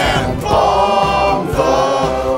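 Choir singing a Christmas-style pop song over backing music, holding long sustained notes before moving to a new chord.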